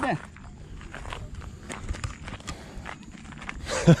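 Footsteps on a gravel lane, a quick irregular run of light steps, over a low rumble.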